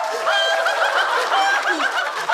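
A person's high-pitched laugh in quick repeated 'ha' pulses, held and then trailing off with a falling pitch near the end.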